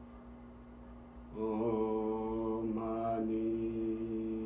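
A low voice chanting or humming one long, steady note that begins about a second in, shifting slightly in pitch partway through.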